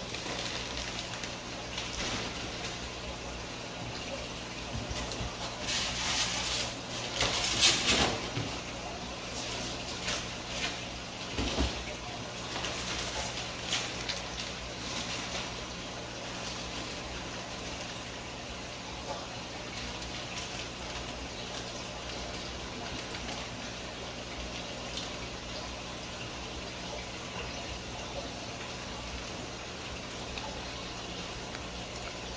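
Steady running and bubbling water from aquarium filtration, over a low electrical hum. A few louder bursts of handling noise stand out about six to eight seconds in and again around eleven to twelve seconds.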